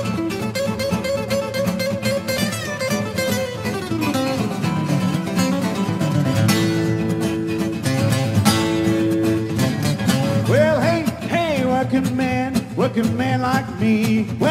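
Several acoustic guitars playing together in an instrumental break of a country blues, a lead guitar picking melodic single-note lines over the others' rhythm playing, with a few held notes about midway.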